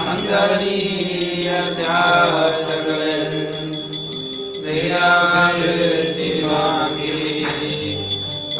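Devotional mantra chanting sung to instrumental accompaniment, with a quick, steady percussion beat, played during the deity darshan.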